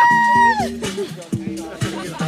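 Dance music with a steady beat; right at the start a woman lets out a loud, high, held shout that rises, holds about half a second and falls away.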